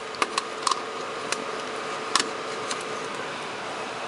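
Steady hiss with a faint hum around a 1950s Murphy TA154 valve radio chassis just plugged into the mains, with a few sharp clicks in the first couple of seconds as its chassis and controls are handled.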